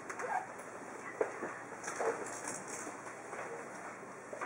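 Faint room noise of a seated audience waiting in a small hall: scattered small knocks and rustles, with a few brief, soft vocal sounds.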